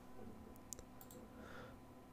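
Near silence: faint room tone with a few soft computer mouse clicks, one slightly clearer about three quarters of a second in.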